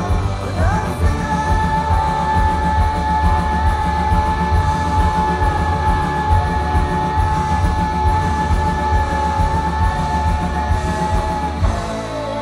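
Live rock band playing, with the singer holding one long high note for about ten seconds over steady pulsing drums and bass; the note and the band stop near the end.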